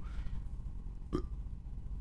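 A short vocal sound about a second in during a pause in a man's speech, a sharp click with a brief voiced catch like a small hiccup or gulp, over a low steady hum.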